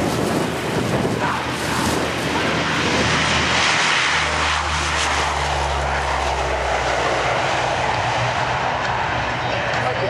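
A Lockheed C-130 Hercules with four Allison T56 turboprop engines at takeoff power, rolling down the runway and lifting off. It is a loud, steady engine and propeller sound, with a deep hum underneath that is strongest about halfway through.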